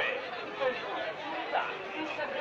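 Several people talking at once nearby: overlapping, unclear chatter of voices in a street.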